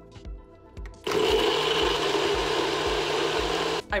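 NutriBullet personal blender starts suddenly about a second in and runs steadily, blending ice and frozen banana into a shake, then cuts off abruptly just before the end.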